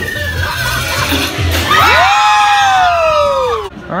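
Riders screaming and shouting together on a drop-tower ride. Midway through, one long scream falls steadily in pitch over about two seconds, over a low rumble.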